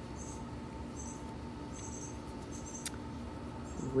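Faint, short, high-pitched chirps repeating about once a second over low background rumble, with one sharp click near the end.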